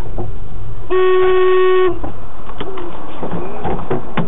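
A car horn sounding once in a single steady blast of about a second, over a noisy background with scattered knocks and clicks.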